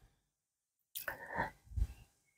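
Soft, faint sounds of a knife cutting through a boiled potato on a plate, starting about a second in, with a second brief sound near the end.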